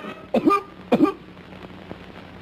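A cartoon character's voice coughing and sputtering in two short, falling-pitched hacks about half a second apart, as if choking on a drink in surprise.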